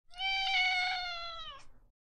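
A cat's long meow, held steady for over a second, then dipping slightly and ending with a quick upward flick.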